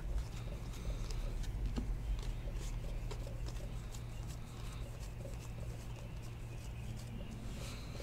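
Trading cards being flipped through and sorted by hand: a quick run of small irregular clicks and soft slides as card edges tap and rub against each other, over a steady low hum.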